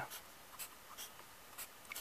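Pencil drawing on paper: a few faint, short scratchy strokes as the lines of a cube are sketched.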